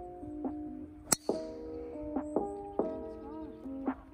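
Background music with a steady run of notes. About a second in, one sharp crack as a driver strikes a golf ball off the tee.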